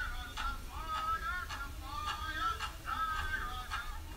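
Powwow drum group: high, wavering singing over drum strikes, fairly faint.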